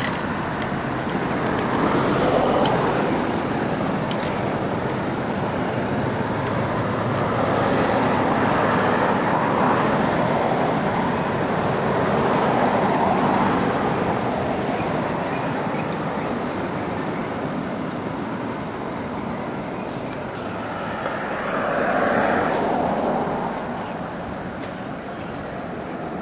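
Road traffic noise: a steady rush of passing vehicles that swells and fades several times as cars go by.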